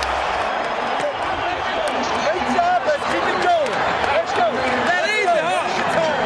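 Several men shouting and hollering excitedly at once in a football touchdown celebration, with no clear words, over the steady noise of a stadium crowd.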